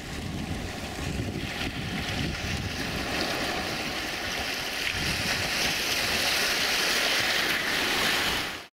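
Sea surf washing in over rocks at the shoreline, a steady rush that swells louder through the second half as waves break, with a low rumble of wind on the microphone underneath.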